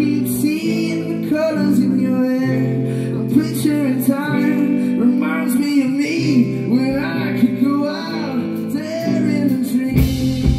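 Live rock band: a man singing over a semi-hollow electric guitar, bass guitar and drum kit, with held chords and frequent cymbal strikes.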